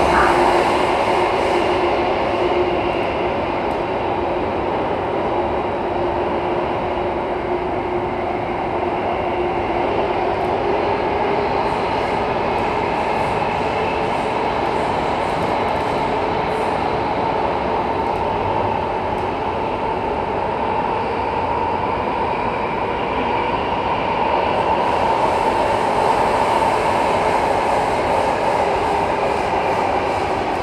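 SMRT Circle Line Alstom Metropolis C830 train running between stations, heard from inside the passenger car with the doors closed: a continuous rolling rumble of the train under way. A low steady tone runs under it and fades out about halfway through, and the running noise swells a little near the end.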